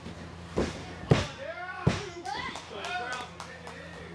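Three sharp thuds on a wrestling ring's canvas within the first two seconds, the second and third the loudest, followed by voices shouting.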